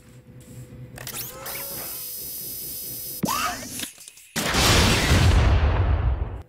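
Synthetic bazooka sound effect: a steady hiss from about a second in, a quick rising whoosh a little after three seconds, then a sudden loud explosion just after four seconds that rumbles on for about two seconds.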